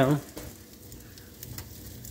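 French toast, egg-dipped bread slices, sizzling in a hot pan: a steady low frying hiss with faint crackles.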